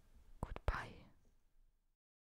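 Three quick, sharp clicks about half a second in, followed by a short, soft whisper.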